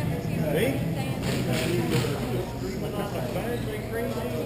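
Indistinct, echoing shouts and chatter of hockey players in a large indoor rink, with a few sharp clacks of sticks about one to two seconds in.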